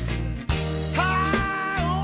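Electric blues band playing an instrumental passage of the song: steady bass and beat under a lead line that holds a high note from about a second in and slides off it near the end.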